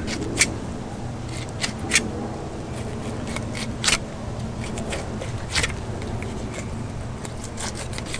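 Fillet knife slicing through a mutton snapper's flesh and skin down toward the tail, with a few sharp scrapes and clicks of the blade against the plastic fillet table, over a steady low background hum.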